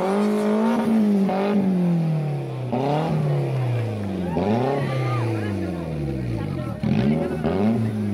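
Engine of a Toyota MR2 Spyder revved over and over, its pitch climbing and dropping about every second and a half.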